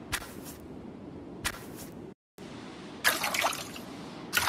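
Simulated footsteps splashing through shallow water in an interactive 3D visualization's soundscape: three short splashes about a second and a half apart over a steady background wash. The sound cuts out briefly just after the middle.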